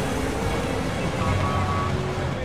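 A large SUV driving past, its engine and tyres running steadily, under background music.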